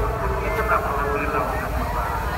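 Voices of people talking over a steady low rumble.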